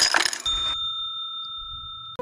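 Intro sound effect: a short burst of crackling digital-glitch static, then a steady high ringing tone held for about a second and a half.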